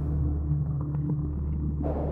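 Background music: a low, steady rumbling drone with a few held low tones.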